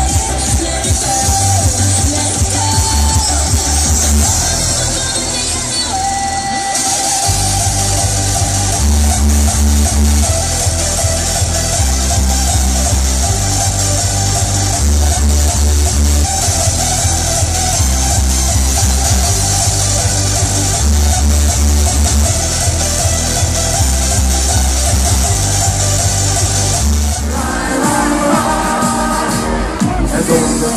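Electronic dance music from a DJ set, played loud over a PA system, with a steady pounding bass beat. The bass drops out briefly about seven seconds in, then comes back.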